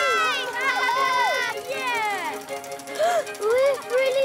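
A cartoon cat's vocal cries, a string of rising and falling yowls and meows, some sliding sharply downward, over background music with held tones.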